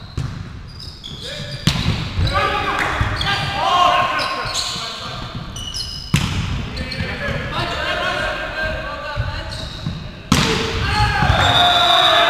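Indoor volleyball rally with players shouting calls: three sharp smacks of the ball being struck, about a second and a half in, around six seconds (an attack at the net) and just past ten seconds, the last followed by the loudest shouting. Everything echoes in the large hall.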